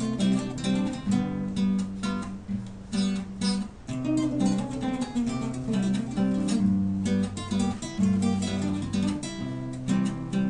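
Two acoustic guitars playing a song together: strummed chords in a steady rhythm, with low chord-root notes under them.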